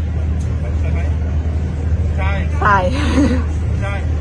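A steady low background rumble, with a woman speaking a few words briefly in the second half.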